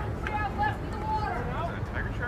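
Indistinct raised voices of several people calling out, over a steady low rumble.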